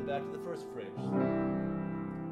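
Grand piano playing slow, warm, sustained chords, with a new chord entering in the low register about a second in. It is the opening of a string quartet played at the piano, which the composer calls very warm and rich.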